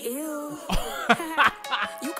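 A man laughing in short bursts over a rap track whose deep bass has dropped out for a moment.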